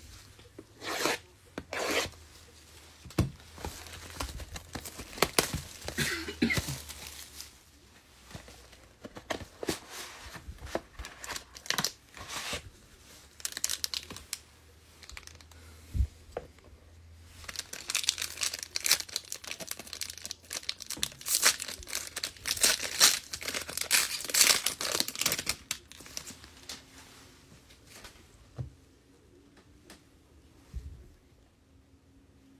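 Plastic and foil wrapping of a Panini Plates & Patches football card box and pack being torn open and crinkled by hand, in irregular bursts that come thickest in the second half.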